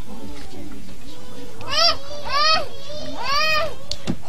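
A young child's high voice crying out three times in short cries that rise and fall in pitch, about two to three and a half seconds in.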